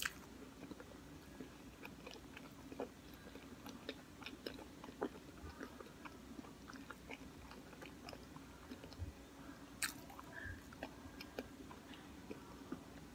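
A person chewing a mouthful of pizza with the mouth closed: soft, scattered mouth clicks and smacks over a faint steady hum.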